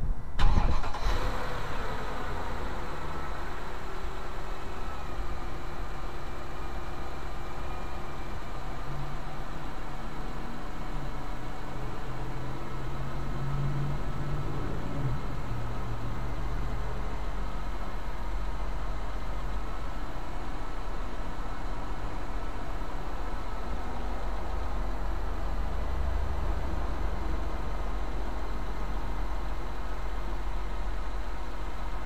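Mercedes M273 5.5-litre V8 idling just after start-up, freshly serviced with a cleaned throttle body and mass airflow sensor. Its revs ease down from the start-up flare in the first couple of seconds, then it settles into a steady idle.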